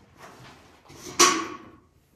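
A hydraulic hand pump for a mini earth-block press being worked, its valve just closed: one sharp clack a little past the middle with a brief ring as it dies away, after a fainter scrape.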